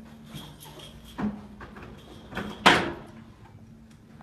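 A door being opened and swinging shut, with a few lighter knocks and one loud bang a little under three seconds in as it closes.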